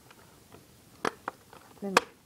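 A few small plastic clicks as an airsoft AK's battery cover is worked back into place, ending in one sharp loud snap near the end as it locks on.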